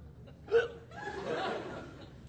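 A short, sharp vocal sound about half a second in, then a brief burst of audience laughter.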